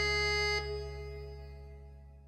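Final held chord on a Korg Pa4X arranger keyboard, closing the song. A higher note drops out about half a second in, and the remaining chord fades out.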